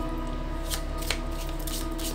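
A deck of tarot cards being shuffled by hand, the cards slipping and tapping against each other, with a couple of sharper clicks near the middle.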